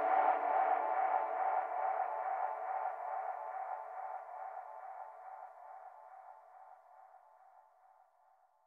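The last sustained synth tone of a psytrance track, with no beat under it, fading out steadily until it is almost gone near the end.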